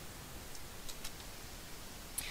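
Low background hiss of room tone, with a few faint, soft clicks.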